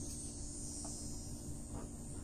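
Faint steady high-pitched drone typical of insects such as crickets, over a low background rumble.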